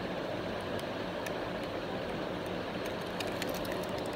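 Steady background hum and hiss, with a few faint light ticks as a small die-cast toy car is turned over in the fingers.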